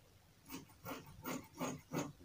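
Scissors snipping through tulle in quick, even strokes, about three cuts a second, starting about half a second in, as its edges are trimmed straight.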